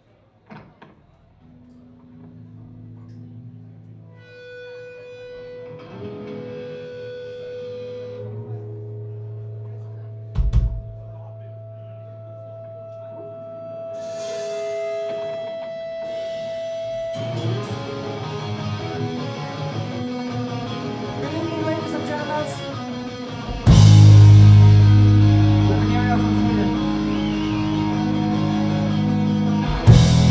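Live punk rock band starting up: electric guitars and bass ring out long held notes, with one loud low drum hit about ten seconds in. The playing thickens from about 17 seconds in, and the full band with drums comes in loudly near the 24-second mark.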